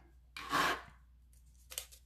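Roll of glue dots being pressed and peeled: a short tearing rasp, about half a second long, as the backing strip pulls away from the adhesive dot, then a fainter brief one near the end.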